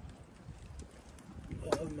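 Wood fire burning in an open fire stand, with a few faint pops over a low, irregular rumble. A sharp click comes near the end, just as a voice starts.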